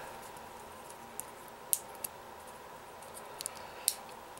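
Hard plastic parts of a Bakugan toy clicking as they are folded and pressed shut into its ball form: a few sharp, separate clicks over a faint steady hum.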